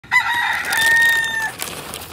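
A rooster crowing once: one long crow held at a steady pitch, ending about a second and a half in.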